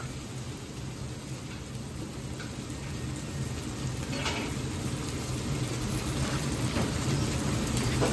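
Fried rice with beef sizzling in plenty of soybean oil in a wok on a gas burner, a steady hiss over a low hum, growing gradually louder.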